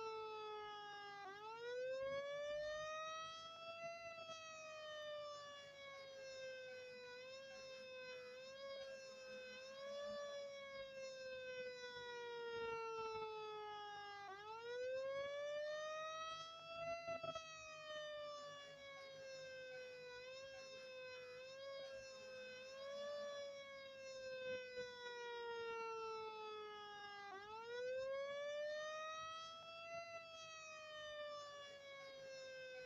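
Federal Q mechanical fire truck siren winding up and slowly coasting down, three times. Each climb in pitch is quick and each fall is long, with a few short re-blips partway down.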